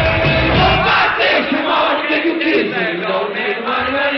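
Live rock band playing loud in a hall, heard from within the audience. About a second in, the bass and drums drop out and the crowd's chanting carries on over the thinner sound.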